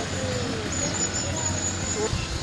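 Outdoor ambience: a steady low rumble, with a faint high insect trill coming in about a third of the way through.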